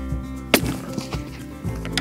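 A single sharp rifle shot about half a second in, from a Tikka T3 in .25-06 fitted with a Stalon sound moderator, over background music.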